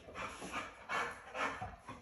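A dog making a few short, excited vocal sounds, eager for the toy being taken out of the box.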